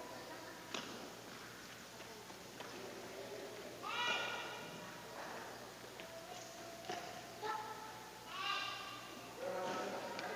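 Court shoes squeaking on a synthetic badminton court mat during footwork drills: a few short squeals about four seconds in and again near the end, with light footfalls and taps between them.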